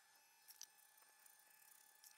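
Near silence: faint background hiss, with a couple of faint brief clicks about a quarter of the way in.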